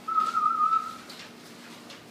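A single high whistled note, held for about a second near the start, steady in pitch with a slight waver.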